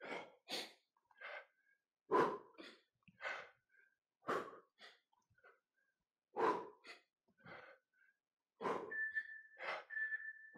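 A man breathing hard in short, sharp puffs while doing bodyweight squats, roughly one breath a second, often in quick pairs. Near the end a steady high tone comes in.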